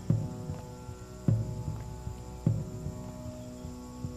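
Suspense underscore: a sustained droning chord with a deep, heartbeat-like thud about every 1.2 seconds.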